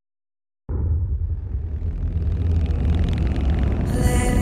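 Silence, then about a second in a low rumble of a car moving along a road cuts in abruptly and carries on steadily, with hiss slowly building higher up.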